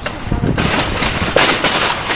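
Loud crackling and rustling of handling noise and wind buffeting on a handheld camera's microphone as the camera is swung about, starting about half a second in and loudest near the end.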